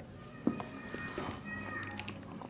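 Dry-erase marker squeaking and scratching on a whiteboard as lines are drawn, with a few short high squeaks and a light tap about half a second in.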